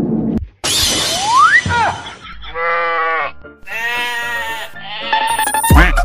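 Edited-in comedy sound effects: a rising whistle-like glide, then two bleating goat-like cries, each about a second long. Electronic music with a beat starts near the end.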